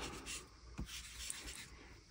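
Faint rubbing of a cotton pad wiping old thermal paste off a laptop's CPU die, dying away in the second half.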